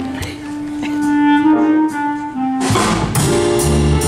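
Small jazz combo playing. A lone woodwind holds a few long notes, then about two-thirds of the way in an upright bass and a drum kit come in with repeated cymbal strikes.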